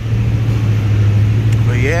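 Steady low hum of a carbureted 1988 Chevy Caprice's engine idling, with the air-conditioning blower rushing, heard inside the cabin.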